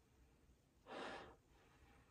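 A single short sniff through the nose about a second in, smelling a perfume test strip held under the nose; otherwise near silence.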